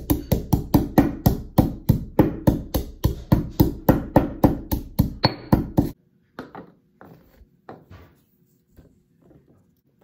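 Stone pestle pounding garlic cloves in a heavy stone mortar: sharp, even knocks of stone on stone, about four a second. They stop about six seconds in, leaving only a few faint light taps and rustles.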